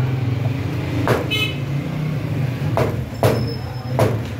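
Meat cleaver chopping chicken pieces on a wooden chopping block: four sharp chops, one about a second in, two close together near three seconds and one at the end. A steady low hum runs underneath.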